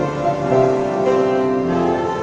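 Small vocal group singing a praise song in harmony, women's voices leading, on long held notes.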